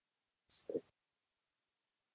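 Silence broken about half a second in by a brief, soft vocal sound from a man, a short hiss followed by a quick murmur, as he pauses mid-sentence.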